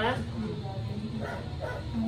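A dog yipping and whining, begging to be given some of the food.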